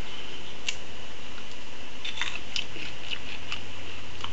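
A few faint clicks and crackles as a small ripe Black Pearl chilli is broken open between the fingers, over a steady background hiss.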